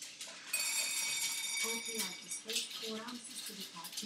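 Homemade Raspberry Pi cat feeder dispensing dry kibble: its dispensing mechanism runs with a steady high whine for the first couple of seconds while kibble rattles down into the bowl in a dense stream of small clinks. It stops about half a second after the end.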